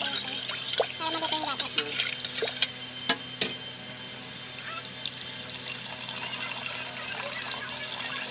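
Milky gelatin (gulaman) mixture sloshing and splashing in a steel pot as a hand mixes it, with a few sharp clinks against the metal; the clearest two come a little after three seconds in. The second half is steadier.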